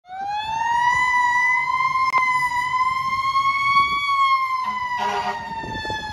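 Fire engine siren sounding as the truck responds: its pitch climbs over the first second, holds high, then slowly sinks in the second half.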